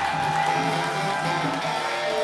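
Live band music, with a guitar among the instruments.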